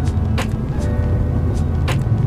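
Steady low road and engine rumble inside a 2021 Kia Forte GT's cabin at freeway speed, with music playing over it.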